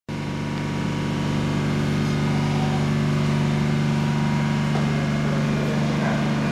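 Steady low hum of machine-tool workshop machinery, holding several even tones with no breaks or rhythm.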